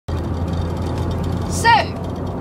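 Steady low road and engine rumble inside a moving Nissan car's cabin. Near the end, a short high voice exclamation falling in pitch.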